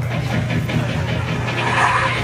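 A steady low electrical hum from the club's sound system, with faint room noise over it.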